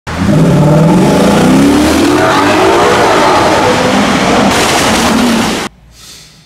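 A car engine revving loudly as the car accelerates through a concrete underpass, its pitch climbing over the first few seconds. It cuts off abruptly shortly before the end.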